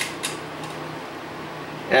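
Steady low background hum, with two small clicks within the first quarter second.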